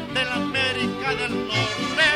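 Instrumental passage of a Mexican comic song played by a band: a melody line with vibrato over a steady, evenly paced bass.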